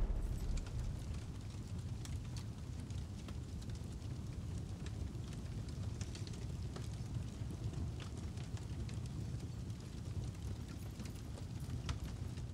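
Fire sound effect: a steady low rumble of flames with scattered small crackles.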